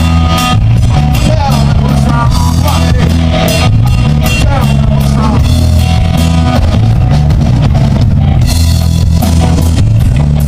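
Live blues-rock band playing an instrumental passage: electric guitars over drum kit, bass guitar, congas and organ, with a lead guitar line bending its notes up and down.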